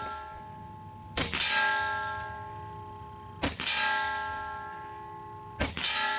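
Three shots from a Diana XR200 .22 PCP air rifle, a little over two seconds apart. Each sharp crack is followed by a ringing metallic tone that fades over about two seconds.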